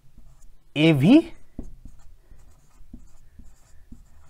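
Marker pen writing on a white board: faint short strokes and taps as letters are written, with one spoken word about a second in.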